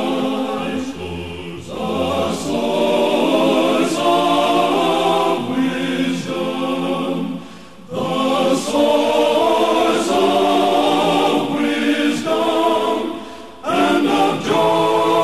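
Male vocal group singing a hymn in close harmony, the phrases breaking off briefly about halfway through and again near the end.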